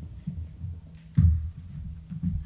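Handling noise from a clip-on lapel microphone being fastened to a jacket: muffled low thuds and rubbing, with one loud knock about a second in.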